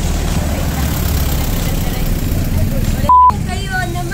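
Steady low rumble of an idling vehicle engine or passing street traffic. About three seconds in, a short, single-pitch electronic beep cuts in as the loudest sound.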